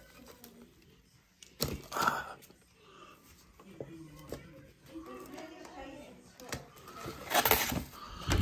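Faint conversation in the room behind, a sharp knock about one and a half seconds in, and a brief, louder rustle of food packaging near the end as the buffet items are handled.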